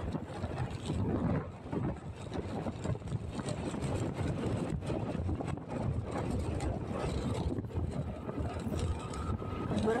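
Wind buffeting the microphone on a moving motorcycle, with the bike's engine and road noise underneath in a steady, gusting rush.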